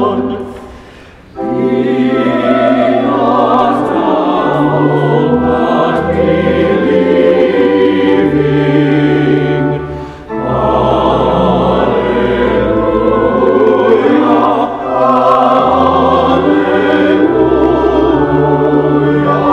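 Choir singing a hymn over held low accompaniment notes, with short breaks between phrases about a second in and around ten seconds in.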